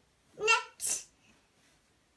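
A short vocal burst from a person: a brief voiced sound about half a second in, followed at once by a sharp breathy hiss.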